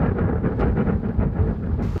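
Steam train running: a loud, low rumble with a fast rattle in it, which cuts off sharply at the end.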